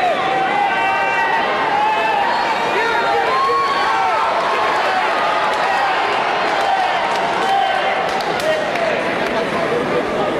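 Arena crowd cheering and shouting support for a fighter, many high-pitched voices calling out over one another without a break.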